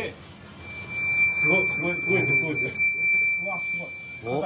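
A steady, high-pitched single tone comes on about half a second in and holds without changing, with quiet voices talking underneath.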